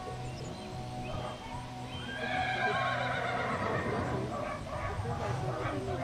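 A horse neighing: one long whinny about two seconds in, lasting about two seconds and sliding slightly down in pitch.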